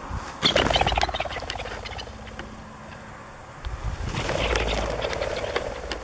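A covey of partridges flushing and taking off, in two loud bursts of wing noise: the first about half a second in, the second about four seconds in.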